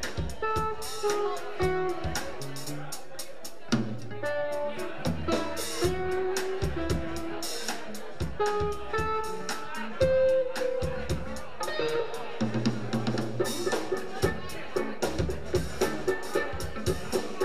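Live rock band playing an instrumental passage: an electric guitar melody of held notes over bass guitar and a busy drum kit.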